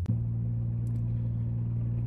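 Steady low drone of a 2008 Chevy Impala driving, engine and road noise heard inside the cabin. A sharp click and brief dip at the very start, after which the drone sits at a slightly higher pitch.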